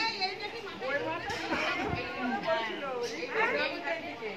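Several people talking at once in overlapping chatter, no one voice standing out.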